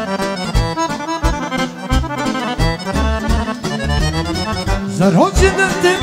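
Live folk dance music led by an accordion over a steady, regular bass beat. A singer's voice slides up and comes in near the end.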